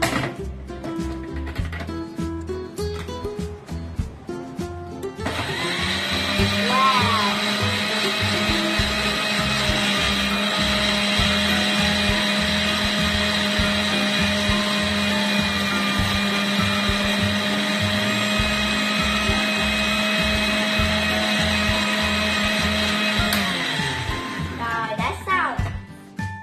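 A Panasonic countertop blender's motor runs steadily for about eighteen seconds, blending passion fruit pulp and seeds. It spins up about five seconds in and winds down near the end.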